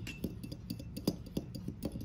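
Metal spoon stirring an olive-oil and lemon-juice dressing in a small glass bowl, clinking against the glass about four times a second as the salt is stirred in to dissolve.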